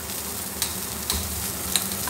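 Cauliflower florets frying in hot oil in a kadhai: a steady sizzle, with a few light clicks.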